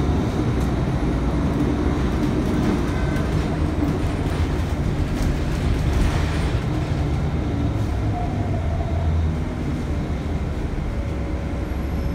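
Cummins L9 inline-six diesel engine and ZF EcoLife transmission of a 2019 Nova Bus LFS heard from inside the cabin while the bus is under way: a steady, deep growl with road noise, easing a little in the last few seconds.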